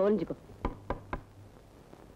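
Three quick knocks on a wooden door, evenly spaced about a quarter second apart.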